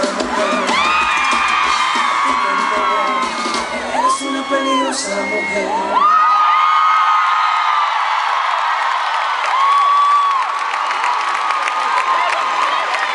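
Live band playing loudly with a crowd of fans screaming over it. About six seconds in the music stops, and the crowd goes on screaming and cheering.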